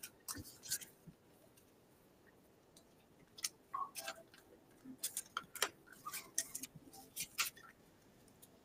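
Faint, scattered light clicks and taps in a quiet room, irregular rather than rhythmic, mostly from a few seconds in until near the end.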